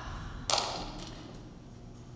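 A single sharp impact, a thump or smack, about half a second in, dying away quickly in the hall's echo.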